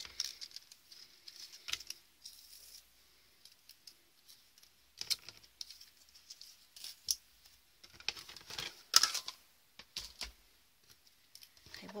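Sparse light clicks, taps and rustles of a card strip, a thin metal cutting die and acrylic cutting plates being handled and set down on a craft mat, with a sharper cluster of clicks about nine seconds in.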